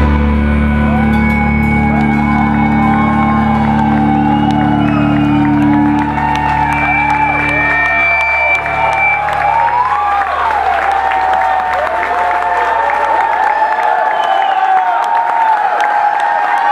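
A live band's closing chord is held and rings out, its low notes fading away by about halfway through. Over it, and continuing after the music has died, a club crowd cheers, whoops and shouts.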